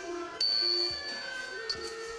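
Thai classical ensemble playing a slow melody that slides between held notes. Small ching hand cymbals are struck about half a second in and again near the end, each leaving a long high ring.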